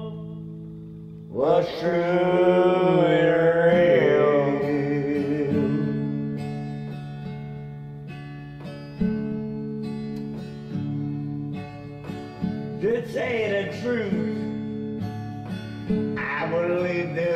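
Acoustic guitar strummed in a slow country song, chords ringing on with a fresh strum every second or two. A man's voice sings a long drawn-out line about a second in and another short phrase near the end.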